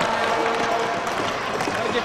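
Hockey arena crowd noise: a steady din of many spectators' voices.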